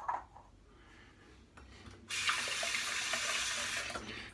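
Bathroom sink tap turned on about two seconds in, water running steadily for about two seconds and then shut off, wetting an alum stick before it goes on the freshly shaved face.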